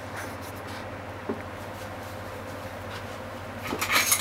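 A frying pan of tofu and green onion on a gas stove, giving a steady low hiss over a constant low hum. Near the end a utensil starts scraping and clattering against the pan.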